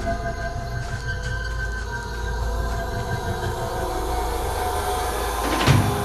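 Suspenseful background music: a sustained drone of held tones over a low rumble, with a short low hit near the end.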